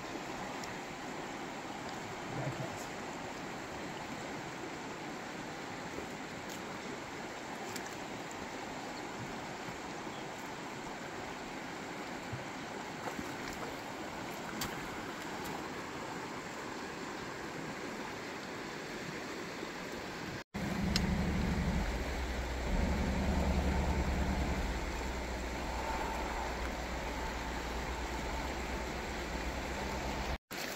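Shallow, rocky river running in riffles, a steady rushing of water. After a brief dropout about two-thirds of the way through, a louder low rumble joins for a few seconds.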